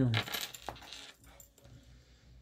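A brief metallic clinking and rustle in the first second, with one sharp click, as a hand wearing rings and a bracelet handles tarot cards on a table; then quiet room tone.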